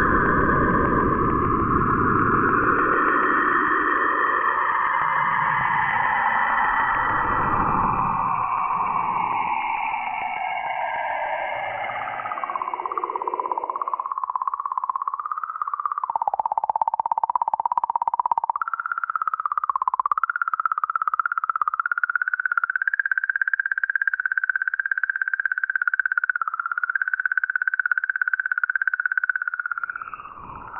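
Spacecraft plasma-wave recordings made audible. First comes Cassini's recording at Saturn, a hissing band of tones that slowly glides downward. About 14 s in it gives way to Rosetta's 'singing comet' recording at comet 67P, a single warbling tone that wavers up and down and steps up in pitch partway through.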